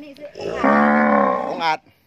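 Cattle mooing: one long, loud moo held at an even pitch for about a second.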